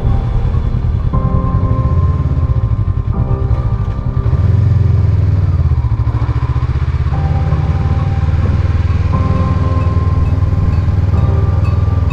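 Motorcycle engine running steadily while riding, a dense low rumble, with background music laid over it: held chords that change about every two seconds.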